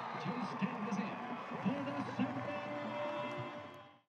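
Indistinct background voices with music playing under them, fading out near the end.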